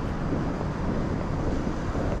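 Steady rushing noise with a low rumble, the sound of air and handling on the microphone of a hand-held camera being carried while walking.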